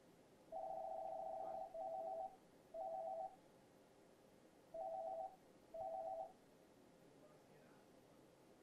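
Electronic telephone ringer sounding a warbling two-tone ring in five bursts: one longer ring, then four short ones, the last ending about six seconds in.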